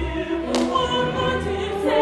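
A mezzo-soprano singing an operatic phrase with a full voice over an orchestra.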